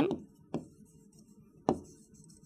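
Two sharp taps, about a second apart, of a pen striking the board's surface while a word is handwritten.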